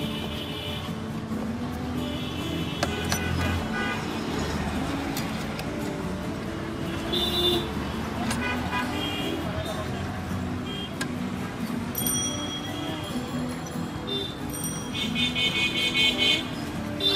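Busy road traffic with several car horn toots, a longer honk near the end, over a hubbub of voices.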